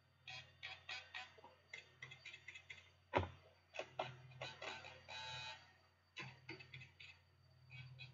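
Tiny brushless motors of a toothpick micro quad briefly spun up in short bursts, faint whirs and clicks, to check that each now turns the right way after being reversed. A single sharp knock comes about three seconds in.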